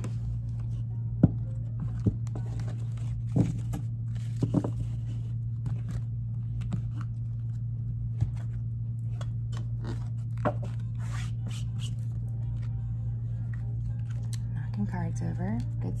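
A deck of tarot cards being shuffled by hand, with papery riffles and sharp card clicks and taps scattered through, over a steady low hum.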